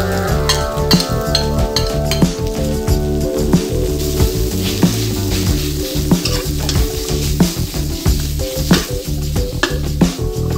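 Chopped pork sizzling in hot oil in a wok with chili and garlic as it is stir-fried, a metal spatula repeatedly scraping and knocking against the pan.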